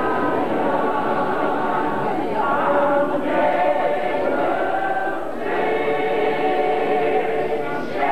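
Large church choir singing a hymn, many voices holding long chords, with a short break between phrases about five seconds in.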